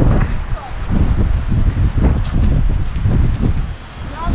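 Wind buffeting the microphone: an uneven, gusting rumble, with faint voices underneath.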